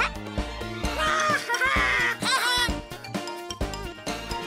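Children's music of toy xylophone notes over repeated small-drum beats, played together after a count-in.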